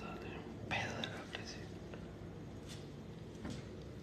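A man whispering quietly, loudest about a second in, over a faint steady low hum.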